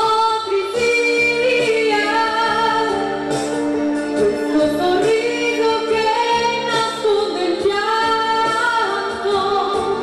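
A woman singing into a handheld microphone over instrumental accompaniment, with long held notes that slide between pitches.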